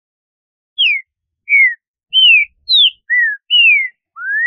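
Green-winged saltator (trinca-ferro) song from a clean, edited recording: six clear whistled notes, most of them gliding downward, about half a second apart.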